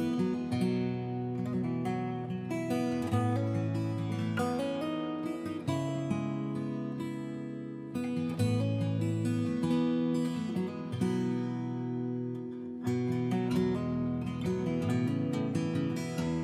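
Background music: an acoustic guitar playing chords, changing every second or two.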